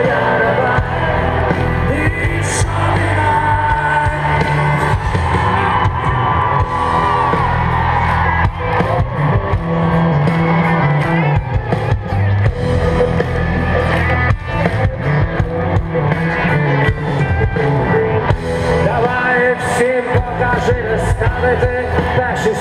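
Live rock band playing with singing over a stadium PA, recorded from within the audience.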